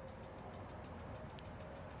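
Faint steady background noise with a faint steady hum, and one tiny tick a little over a second in.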